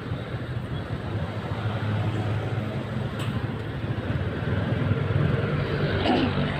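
Motorcycle running in slow traffic, heard from the rider's seat: a steady low engine drone over road noise that grows a little stronger about two seconds in and again near the end.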